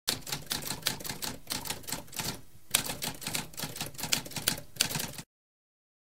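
Typewriter typing: a rapid, uneven run of keystrokes with a brief pause about halfway through, cutting off suddenly a little after five seconds.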